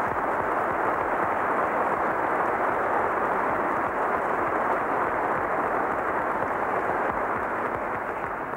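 Audience applauding: many people clapping together in a dense, steady round of applause.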